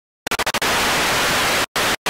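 Loud white-noise static hiss from an intro sound effect. It stutters on and off in a few quick chops, then runs steady and cuts out twice near the end.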